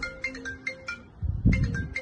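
An iPhone ringing with an incoming call: a ringtone of short, clear pitched notes in a repeating melody.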